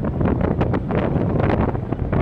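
Wind buffeting a phone microphone on an open ship's deck: a loud, uneven rumble with irregular gusty crackles, masking whatever the boats below are doing.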